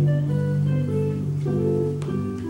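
Guitar picking a short instrumental passage between sung lines, separate notes sounding over a held low note.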